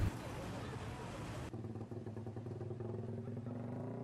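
Street sound: a motor vehicle engine running steadily, with people talking in the background.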